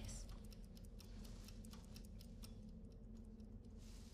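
Faint ticking of wall clocks, a few ticks a second and not quite even, over a low steady hum.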